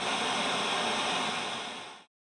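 A steady, static-like hiss of white noise, a transition sound effect, that starts suddenly, eases off near the end and cuts out.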